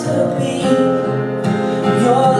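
A man singing into a microphone over a strummed acoustic guitar, a live solo acoustic performance.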